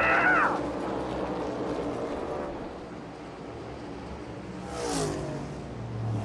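Shouts from the celebrating crew right at the start, then a NASCAR Cup Series car's V8 engine running, with a race car passing by about five seconds in, its pitch falling as it goes.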